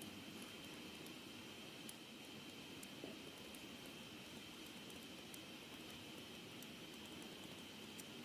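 Near silence: steady room hiss with a faint, steady high whine, and scattered faint ticks from a stylus writing on a tablet screen.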